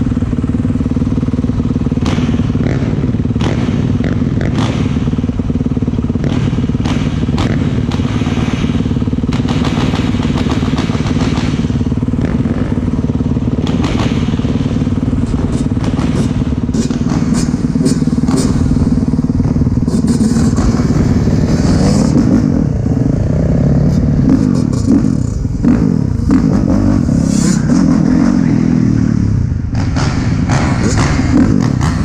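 Dirt bike engine running at low revs, with scattered light clatter. In the last third it gets louder, the revs rising and falling unevenly.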